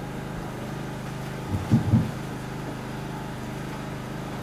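A steady low hum with a buzz of evenly spaced overtones, with three brief low sounds about one and a half to two seconds in.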